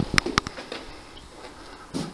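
Two sharp clicks in quick succession near the start, then low background hiss.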